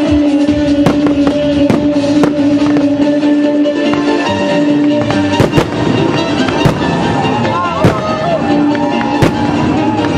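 Aerial fireworks shells bursting with sharp bangs every second or so, heard over loud music with long held notes that gives way to a wavering melody in the second half.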